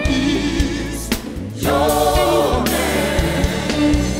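Live gospel music: a band with a vocal group singing long, wavering held notes in harmony. The band drops out briefly about a second in, then the voices come back in together.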